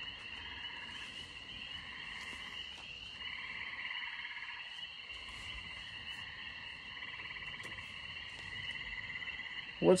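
Steady chorus of small calling animals, a continuous pulsing trill held on several high pitches, fading a little about three seconds in and then carrying on.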